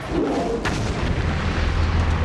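Explosion and fire sound effect: a sharp bang about two-thirds of a second in, then a continuous deep rumble of flames.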